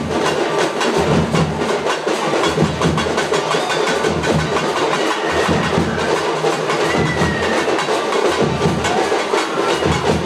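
Loud, busy music driven by fast, dense drumming, the strokes coming thick and without pause.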